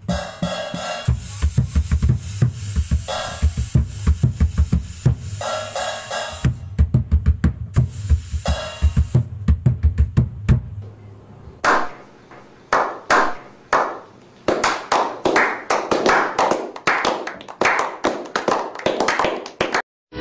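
Small band playing an instrumental on drum kit, bass guitar and guitars, fading out about eleven seconds in. Then a string of sharp percussive hits in an uneven rhythm, about two or three a second, until the end.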